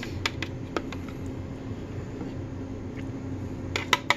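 A few light clicks and taps of a spoon and plastic measuring cup against a plastic food container as Miracle Whip is scraped into the tuna, with a quick cluster of taps near the end, over a steady low room hum.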